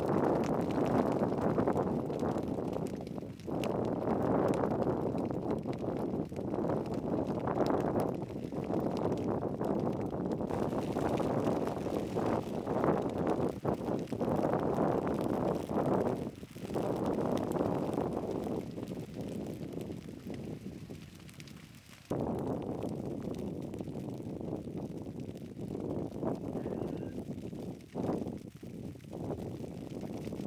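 Dry grass burning in a low flame front, a dense crackling over a steady rushing sound. The sound drops and shifts abruptly a few times, most sharply about two-thirds of the way through.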